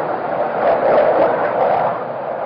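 Fighter jet flying past at an air show: a loud, rushing engine noise that swells to a peak about a second in and then eases off.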